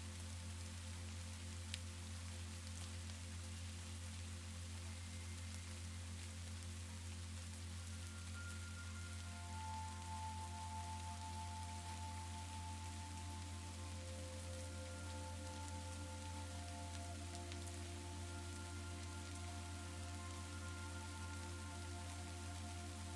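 Steady rain-sound ambience with a deep steady drone underneath; soft, sustained ambient music tones come in about nine seconds in and hold to the end.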